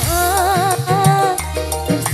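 Live dangdut band music played loud through a PA: a high melody line wavers with strong vibrato over a steady bass and drum beat.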